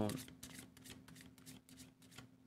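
A deck of tarot cards being shuffled by hand: a faint, irregular run of soft card flicks and slides.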